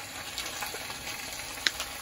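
Fresh garden spinach sizzling in a hot pot: a steady hiss with light crackles, and one sharp click near the end.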